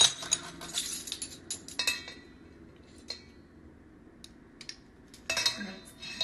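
Metal measuring spoons clinking against a stainless steel mixing bowl, several sharp clinks in the first two seconds, a quieter gap with a few faint ticks, then another cluster of clinks near the end.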